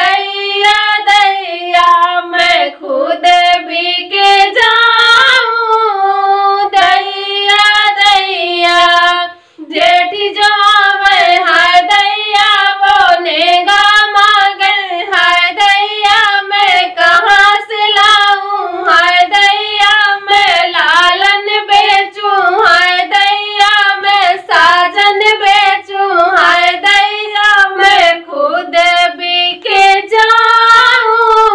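Two women singing a sohar, the folk song sung at a child's birth, together and without instruments. They break off briefly about a third of the way in, then sing on.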